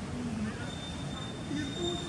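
Outdoor ambience: distant people's voices over a low steady rumble, with a thin, steady high-pitched tone that comes in a little before a second in and holds.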